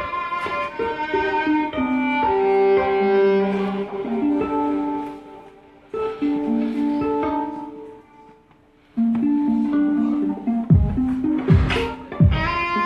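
Live bowed violin playing slow, sustained notes, some as double-stops, with two brief pauses. A few deep thumps sound near the end.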